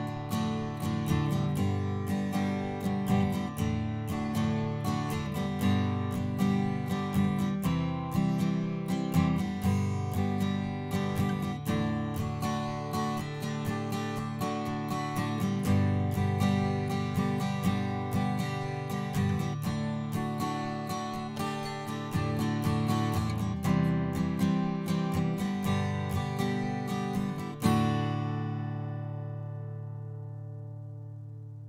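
Acoustic guitar strumming a run of chords, recorded through a large-diaphragm condenser microphone. Near the end a last chord is strummed and left to ring out and fade.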